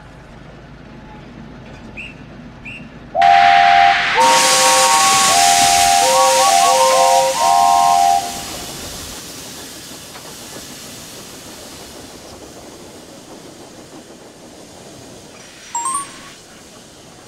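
Steam locomotive whistles at several different pitches blowing in short overlapping blasts over a loud rush of escaping steam. The whistles stop about 8 s in, and the steam hiss then dies away slowly. A brief sharp sound comes near the end.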